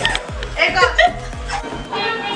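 Background dance music with a heavy, repeating bass beat, with voices and laughter over it; the bass beat stops just before the end.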